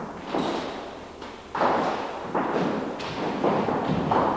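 Dancers' feet landing and stamping on a studio floor: about six irregular thuds, each trailing off briefly in the large room.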